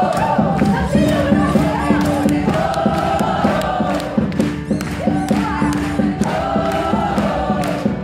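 Live band music with several women singing together over a steady percussive beat and a held low note.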